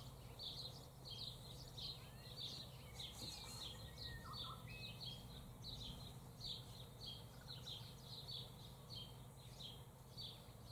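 Faint outdoor ambience of birds chirping: a steady run of short, high chirps, about three a second, with a couple of fainter whistled notes partway through, over a low steady hum.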